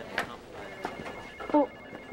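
A telephone rings electronically, a fast-pulsing trill of a few steady high tones beginning about half a second in, after a sharp click.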